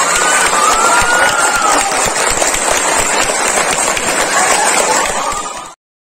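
Audience applauding, with voices calling and cheering through the clapping, cut off suddenly near the end.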